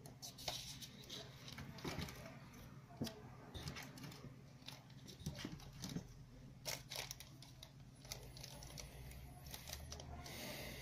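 Faint handling of a vape tank kit's packaging: small plastic bags of spare parts crinkling, with irregular sharp clicks and taps as small parts and the box insert are moved.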